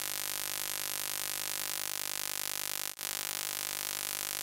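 Steady hiss of recording noise with faint buzzing tones in it, dropping out for an instant about three seconds in at a splice between clips.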